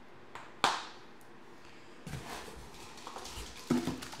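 One sharp knock a little over half a second in, as a hard plastic irrigation part is set down. From about halfway, irregular handling and rustling as parts are moved about in a cardboard box.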